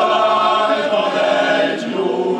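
Male-voice choir singing a cappella, holding sustained chords.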